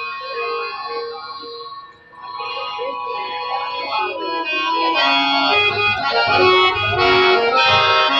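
Harmonium playing: held chords at first, then a moving melody that builds in loudness, with drum beats joining about five seconds in.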